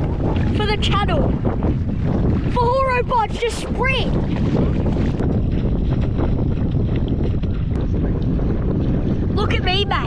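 Wind buffeting the microphone in a steady low rumble. A voice cuts through it with a few short wavering calls: about half a second in, around three seconds in, and near the end.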